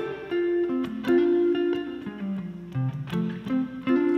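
2018 Fender Classic 50s Stratocaster electric guitar played through a tube amp with light crunch, picking a quick melodic phrase of short notes, some of them sounded two at a time as double stops.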